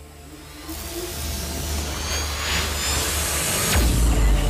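Cinematic logo-intro sound effect: a whoosh that swells steadily louder over a low rumble, building to a sharp hit with a deep boom near the end.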